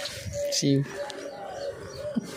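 Doves cooing: a run of short, even notes at one pitch, repeating. A brief human voice sound comes about half a second in.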